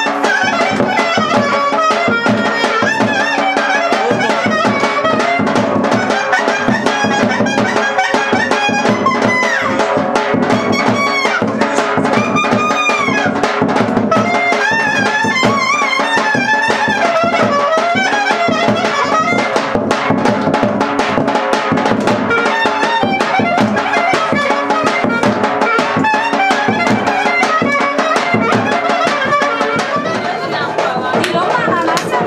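Live Balkan Roma-style band music: a clarinet plays a fast, heavily ornamented melody over driving drum percussion.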